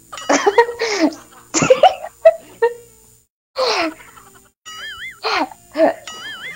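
Bursts of laughter and short vocal outbursts from several people. A brief warbling electronic tone, like a sound effect, comes in twice, near the start and near the end.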